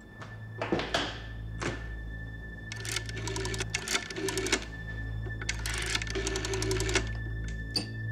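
Rotary-dial desk telephone being dialled: a few knocks as the handset is handled, then two runs of rapid, even clicking as the dial spins back after each digit. A low steady music drone with a thin high tone runs underneath.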